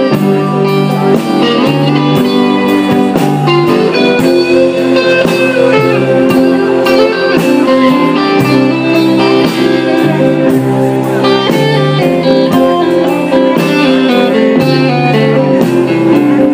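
Live blues band playing an instrumental break, electric guitar leading over upright bass and a drum kit with a steady beat.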